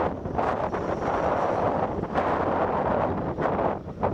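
Steady rushing noise of wind on the microphone, the natural sound of outdoor field footage, with a few faint ticks.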